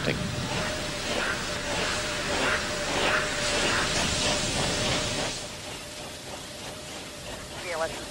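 Steady hiss with a faint held tone underneath and faint, indistinct voices; the hiss drops off abruptly about five seconds in, leaving a quieter background.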